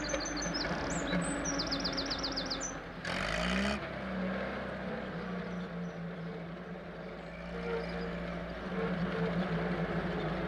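Small van engine running steadily, revving up briefly about three seconds in. A bird chirps in a quick run of high notes over the first couple of seconds.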